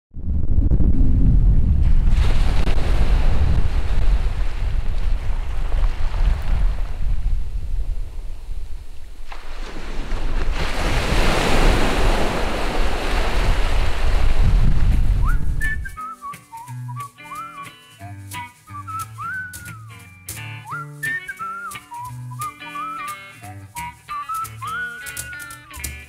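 Waves washing onto a pebble beach for about the first sixteen seconds, in two big surges with a heavy low rumble. Then music takes over: a whistled melody over a sparse plucked beat.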